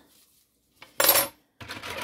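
A metal spoon clatters once against a metal pan in the sink, about a second in: a short, sharp clink with a brief ring.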